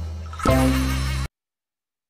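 Buzzy, insect-like sound effect in the edited soundtrack, with strong bass, stopping abruptly into silence a little past halfway.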